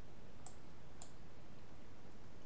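Two computer mouse clicks about half a second apart, over steady background noise.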